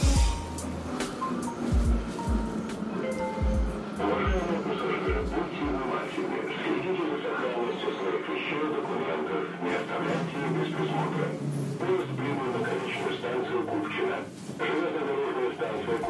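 Hip-hop track with a rapped vocal over the beat. Heavy kick drums hit through the first six seconds or so, then the kick drops out while the vocal and the rest of the beat carry on.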